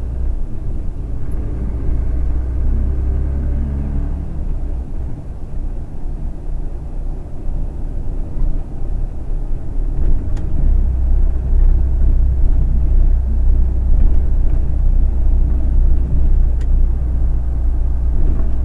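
A motor vehicle's engine and road rumble heard from inside the cab while driving. The engine pitch rises in the first few seconds as it speeds up, then settles into a steady low drone at cruising speed.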